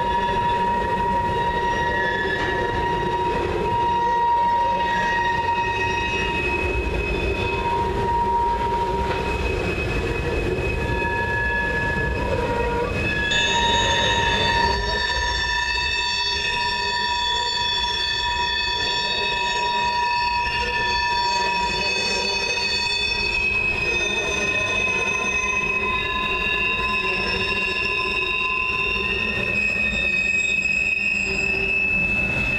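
Wheels of loaded coal gondola cars squealing as the train rolls across a steel deck girder bridge: several steady high tones at once over a low rumble, with higher squeals joining about halfway through.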